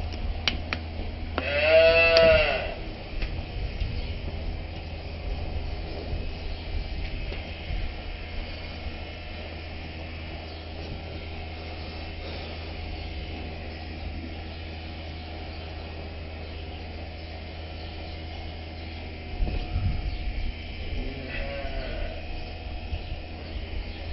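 A cow in the race gives one loud, short moo that rises and falls in pitch about two seconds in, and a fainter call follows near the end, over a steady low hum.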